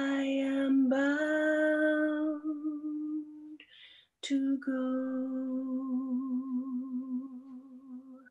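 A woman singing unaccompanied: long held notes with a wavering vibrato, in two phrases with a short breath between them about four seconds in.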